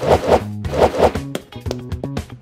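Children's cartoon background music with a cartoon scurrying sound effect: four quick scuffing rustles in two pairs during the first second, as the characters dash off.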